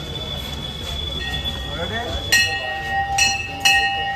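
Hanging brass temple bells struck three times in the second half, each strike ringing on with clear high tones, while a bell tone is already sounding from the start.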